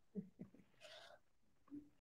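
Near silence, broken by a few faint, brief sounds.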